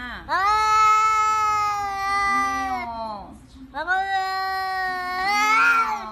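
Tabby cat giving two long, drawn-out meows. Each lasts two to three seconds, rising at the start, holding steady, then falling away at the end.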